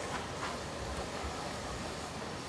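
Steady street ambience: a low vehicle hum with hiss, with a couple of faint clicks about half a second and a second in.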